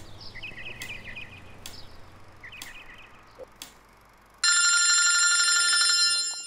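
Water dripping from a tap, a sharp drip about once a second, with a bird chirping twice in the background. About four and a half seconds in, a BlackBerry mobile phone's ringtone starts loudly, a steady high chime.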